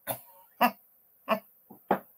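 A woman laughing in about five short, breathy bursts, each cut off quickly, without words.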